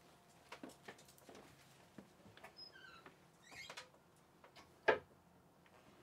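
Faint scattered clicks and taps of movement in a small cabin, with a brief squeak near the middle and one sharper knock about five seconds in.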